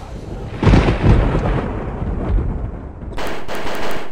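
Dramatic intro sound effects: two sudden deep booms about half a second and a second in, each rumbling away, then a harsh burst of sharp cracks near the end as the bullet-holed logo appears.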